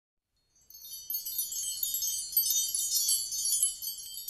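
Wind chimes tinkling: many high, overlapping ringing tones that begin about half a second in.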